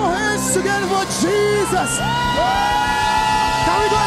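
Live gospel worship music: a choir and lead singers over a full band with sustained chords. A voice holds one long note through the second half.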